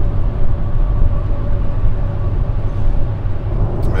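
Steady low rumble of a car driving on the road, heard from inside the cabin, with a faint steady hum over it.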